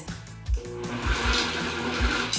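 KitchenAid 9-cup food processor starting about half a second in and running steadily, its blade chopping basil, Parmesan, garlic and almonds into pesto: a steady motor whine under a high hiss. Background music with a regular beat plays throughout.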